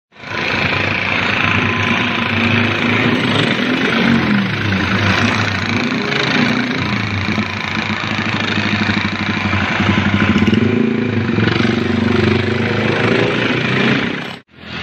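Street traffic dominated by small motorcycle engines passing by, their pitch rising and falling as they go.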